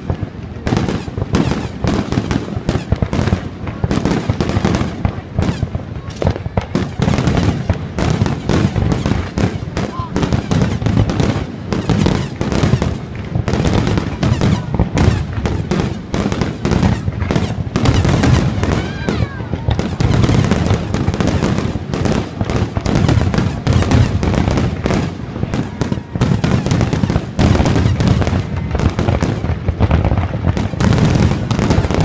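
Fireworks display: a near-continuous barrage of rapid bangs and crackles, shell after shell with hardly a gap.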